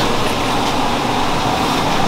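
A steady, loud background noise with a low hum under it, even throughout, with no distinct knocks or strikes.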